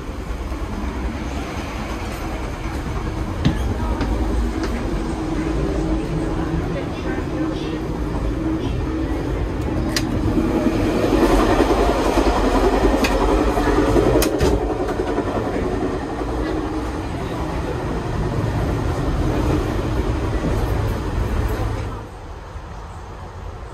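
Inside a Tri-Rail commuter train with Hyundai Rotem bi-level coaches: the steady rumble and rattle of the moving train, with scattered sharp clicks and knocks. The noise swells for a few seconds in the middle.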